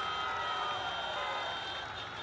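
An audience's car horns honking in a long held blare, mixed with distant crowd cheering, in answer to a line of the speech. The level eases off a little toward the end.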